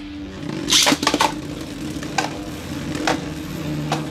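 Beyblade Burst tops spinning on a plastic stadium floor with a steady whirring hum. About a second in comes a sharp zip and clatter as the second top is launched into the stadium, followed by a couple of lighter knocks.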